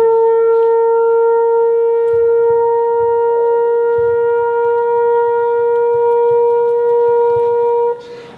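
A trombone holding one long, steady, fairly high note for nearly eight seconds without changing pitch. It stops right at the end, as if for a breath.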